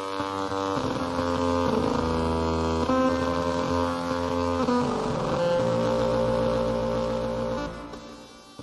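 Atonal electronic music: sustained dissonant tones stacked over a low drone, the chord shifting every second or two. It drops away just before the end.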